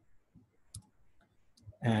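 A few faint clicks of a stylus tapping on a tablet screen during handwriting, then a man's voice starting again near the end.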